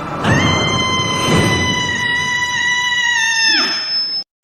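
A high-pitched voice holding one long, very high, steady note for about three seconds, over a noisy background, then breaking off shortly before the end.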